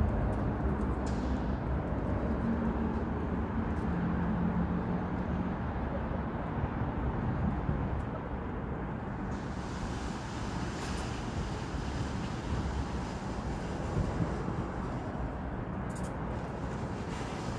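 Steady low rumble of an idling vehicle engine and outdoor traffic, with a faint hum in the first few seconds.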